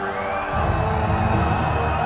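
Symphonic black metal band's atmospheric intro playing live at concert volume, with held keyboard-like tones and a heavier low end that comes in about half a second in, over a cheering crowd.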